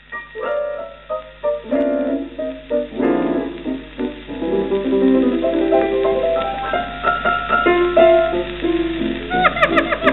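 Old 78 rpm shellac recording of a 1930s saxophone-and-piano foxtrot: the piano plays the introduction in chords and runs, and the saxophone comes in with quick bending notes near the end. The sound is thin and dull, with a steady low hum beneath.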